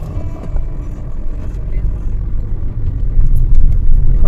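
Steady low rumble of a car's engine and tyres, heard from inside the cabin while driving, growing louder near the end.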